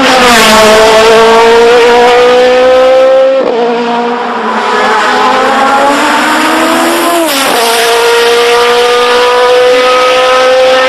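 Sports prototype race car's engine at high revs under full throttle, loud, its pitch climbing slowly, with two quick drops in pitch about three and a half and seven and a half seconds in.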